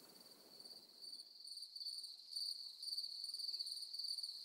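Crickets chirping at night: a high, steady trill pulsing a few times a second, fading in over the first couple of seconds.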